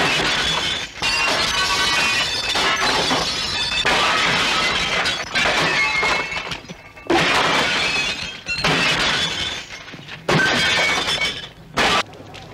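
Glass window panes being smashed with sticks, crash after crash.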